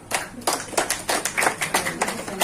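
Scattered hand claps from a small group of people, starting suddenly and going on in an irregular patter of several claps a second.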